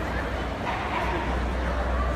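A dog's brief call over the steady noise and voices of a busy hall.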